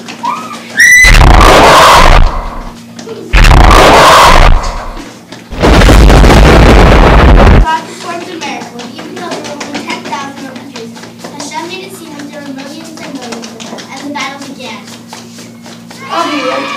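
Three loud, distorted bursts of noise, each one to two seconds long, overload the recording in the first half. After them, children's voices chatter faintly.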